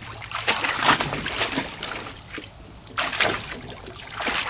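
Shallow water in a plastic kiddie pool splashing and sloshing as a large dog wades and paws about in it, in two bouts: one starting about half a second in and lasting about a second, another around three seconds in.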